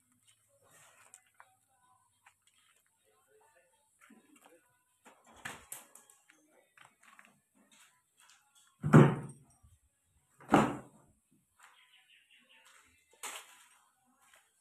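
Two loud thuds about a second and a half apart, with a few fainter knocks before and after them.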